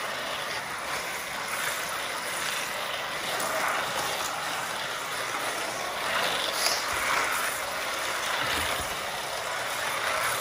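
Electric toy slot cars running around a plastic slot-car track, a steady whir of small motors and wheels in the track slots that swells slightly a few times as the cars pass.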